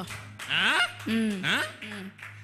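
A man's voice over a microphone making three short utterances with sharply sliding pitch, rising, then falling, then rising, over a steady low hum.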